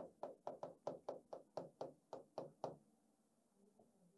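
Marker pen writing on paper: about a dozen short tapping strokes, roughly four a second, stopping about three quarters of the way through.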